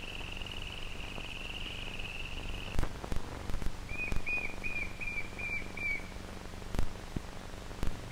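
A high, warbling whistle-like tone held for nearly three seconds, a few sharp clicks, then a run of about seven short whistled chirps, three or so a second. Underneath runs the steady hum and crackle of an old optical film soundtrack.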